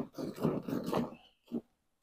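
Hand milking a cow into a bucket: rhythmic squirts of milk, about three or four a second, stopping a little past a second in.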